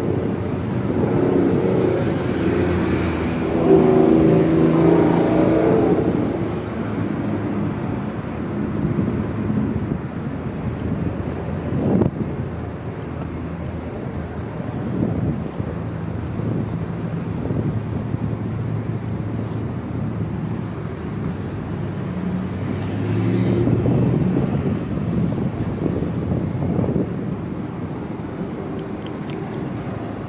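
City street traffic with motor vehicles passing: one louder pass a couple of seconds in and another a little over twenty seconds in, over a steady traffic hum. A single sharp knock comes about twelve seconds in.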